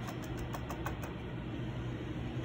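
Steady low background hum, with a few faint light ticks in the first second.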